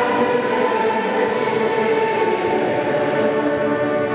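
A church congregation singing together, many voices holding long sustained notes.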